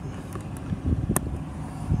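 Low, uneven rumbling handling and wind noise on a handheld camera's microphone, with one sharp click a little over a second in.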